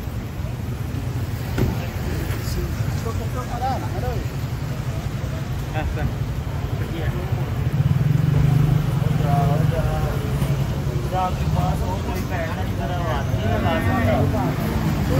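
Busy street ambience: passers-by talking over a steady low rumble of traffic, which swells briefly about eight seconds in.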